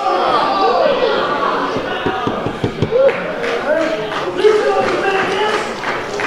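Open-hand chops smacking bare chests in a pro-wrestling exchange: several sharp hits about two to three seconds in and a louder one a little later. Voices shout and call out throughout, echoing in a hall.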